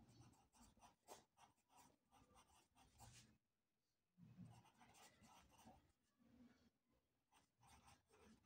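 Very faint scratching of a pencil on paper in short handwriting strokes, with a brief pause about halfway.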